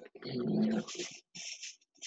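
A dog making a few short vocal sounds, one longer one and then brief ones, heard over a video call's audio.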